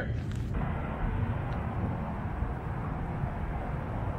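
Steady outdoor city ambience heard from high up: a continuous low rumble and hiss of distant traffic, picked up by a DJI Osmo Pocket's built-in microphone.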